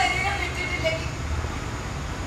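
A stage actress's voice speaking Malayalam, a drawn-out word trailing off about a second in, followed by a pause filled by a steady low rumble.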